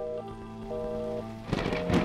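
Film-trailer score: a soft, repeating pattern of steady notes over a low drone. About one and a half seconds in, a loud rushing swell of noise rises over it and peaks at the end.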